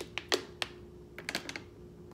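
Thin plastic water bottle crackling with a string of sharp, irregular clicks as it is gripped, lifted and tipped up to drink.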